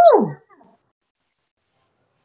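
A woman's short, high vocal cry that slides steeply down in pitch, lasting under half a second at the start.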